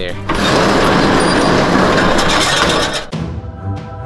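Metal roll-up storage unit door rattling loudly as it is raised, for about three seconds. It then stops and background music comes in.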